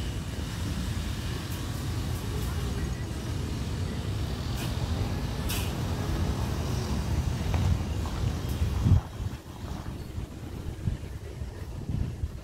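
Wind buffeting a phone microphone outdoors: an uneven low rumble that drops away suddenly about nine seconds in, with a few faint clicks.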